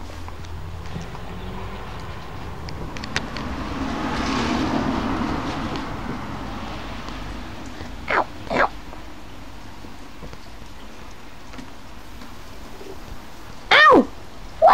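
Puppy whining: two short, falling high whines about eight seconds in and a louder one at the very end, over steady rain. A rushing noise swells and fades between about three and six seconds in.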